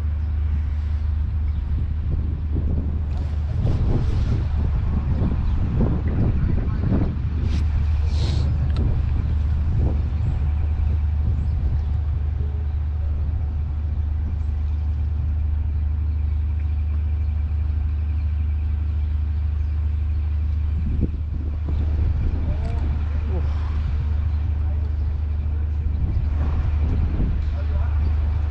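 Wind buffeting the microphone in a steady low rumble, with indistinct voice sounds a few seconds in and again near the end.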